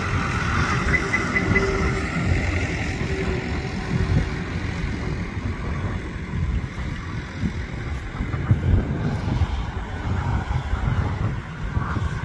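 Steady low rumble of road and wind noise from a moving vehicle, swelling and easing a little.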